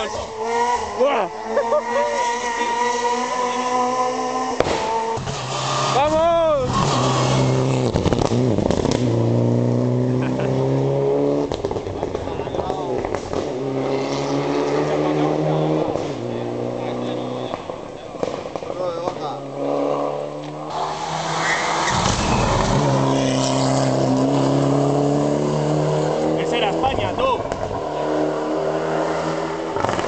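Rally car engine revving hard through its gears along the stage, the pitch rising and falling again and again as it accelerates and brakes between corners.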